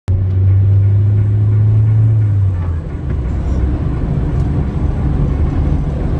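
Engine and road rumble of a Toyota sedan taxi heard from inside the cabin. A steady low hum runs for the first two and a half seconds, then gives way to an uneven low rumble.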